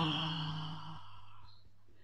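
A woman's long, audible sighing exhale in guided breathwork: a low hummed tone that stops about halfway through, with the breath trailing off and fading to near quiet soon after.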